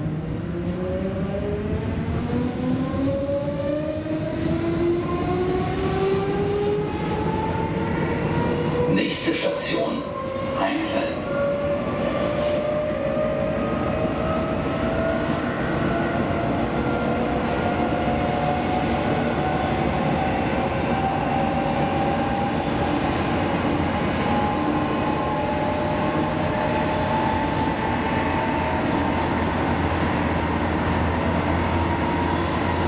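Class 472 S-Bahn electric multiple unit accelerating, heard from inside the passenger car: the whine of its electric traction drive climbs steadily in pitch over the rumble of the running gear, levelling off near the end. A short cluster of knocks comes about nine to eleven seconds in.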